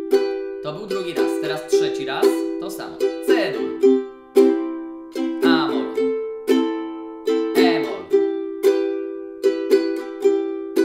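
Ukulele strummed slowly in a down, down, up, down, up pattern, changing between C major, A minor and E minor chords.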